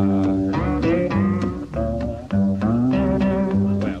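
Blues slide guitar playing a gliding fill over a plucked upright bass line, between the vocal lines of the song; a man's singing voice comes back in at the very end.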